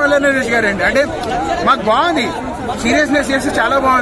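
Only speech: a man talking continuously, with chatter from other people around him.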